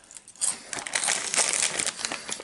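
Crinkling of a plastic Takis chip bag being handled and lifted, a dense crackle that starts about half a second in.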